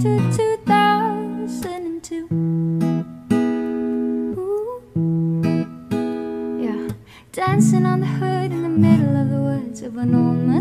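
Music: an instrumental break in a pop song cover, acoustic guitar strumming a new chord every second or two, with little singing.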